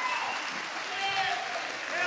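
A church congregation applauding, with voices calling out over the clapping.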